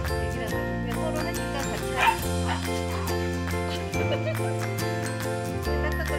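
Background music with jingling bells, and a small dog giving a short bark about two seconds in.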